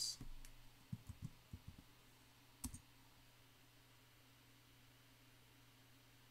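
Light clicks of computer keys as a short chat message is typed: about half a dozen taps in the first two seconds, then one sharper click a little over halfway through. After that only a faint steady low hum.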